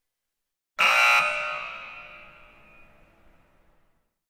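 A sudden loud ringing sound effect that starts about a second in and slowly fades away over about three seconds.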